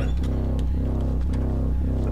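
Droning horror-film score: a steady low drone under a soft pulsing tone that repeats a little over twice a second.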